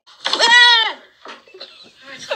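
A single loud, high-pitched cry, just under a second long, rising and then falling in pitch, followed by a few faint knocks.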